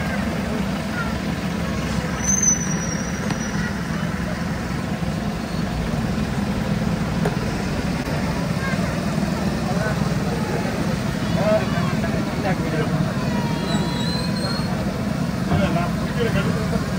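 Busy street ambience: a steady low hum of traffic with background chatter from passers-by, and a brief high squeal about two and a half seconds in.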